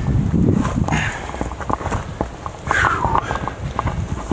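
A climber shifting position on a rock face: irregular scuffs and knocks of hands, body and backpack against the rock over a low rumble of handling noise, with a short falling vocal sound, like a sigh, about three seconds in.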